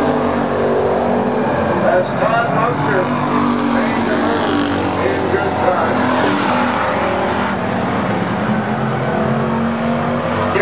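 Stock car engines racing around an asphalt oval, a steady mix of several engines, with a brighter rush as cars pass closer between about three and seven seconds in.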